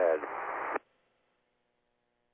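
A man's voice over a narrow-band space-to-ground radio link finishes a drawn-out word with a little hiss behind it. The audio then cuts off abruptly about a second in, leaving near silence with only a faint steady hum.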